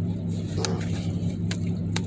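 Steady low hum of a car running, heard from inside the cabin, with a few sharp clicks about half a second, a second and a half, and two seconds in.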